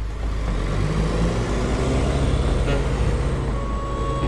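Engine and road noise of a Mahindra Bolero jeep driving along a highway: a steady low rumble with a rushing swell in the middle. Music comes back in near the end.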